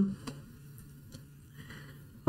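Faint sound of a ballpoint pen tracing over transfer paper, with a few light ticks, over a steady low hum.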